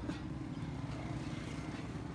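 Steady low hum of a vehicle engine running, with no distinct knocks or other events over it.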